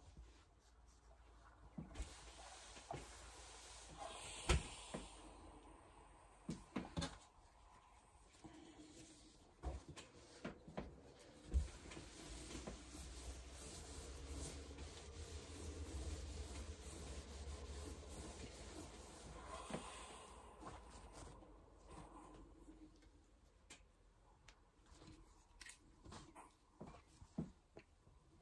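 Quiet handling sounds: an electric iron sliding over cross-stitch fabric on a cloth-covered table for several seconds in the middle, with rustling of fabric and paper and scattered light knocks as the iron and pieces are set down and picked up.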